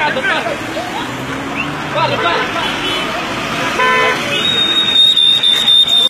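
A car horn toots briefly about four seconds in over voices outdoors, followed by a high, steady tone for the last second and a half.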